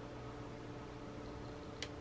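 Quiet room tone: a steady low hum with a faint hiss, and one faint short tick near the end.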